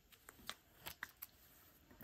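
Thin paper crinkling and rustling as a small cut-out photo piece is handled and pressed onto a binder page, with about six short sharp crackles in the first second or so. The sound is quiet.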